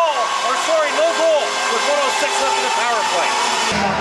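Play-by-play commentator's voice talking over a steady hum and arena background noise.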